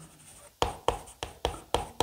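Chalk writing on a blackboard: after a quiet first second, about six short, sharp chalk strokes in quick succession.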